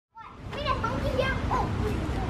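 Young children's high-pitched voices calling and chattering, with swooping sing-song pitch, over a steady low rumble.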